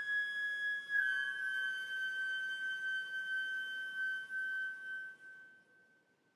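Silver concert flute holding one long high note with a soft tone. The pitch dips slightly about a second in, and the note fades away near the end.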